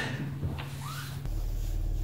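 Quiet room tone, then about a second in a steady low hum of a Land Rover Discovery 3 running, heard from inside the cabin.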